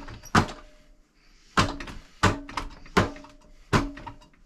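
Four-armed Wing Chun wooden dummy struck by hand and forearm: sharp knocks, each with a short ringing tone from the dummy's arms and trunk. About five strikes, under a second apart after a longer gap near the start.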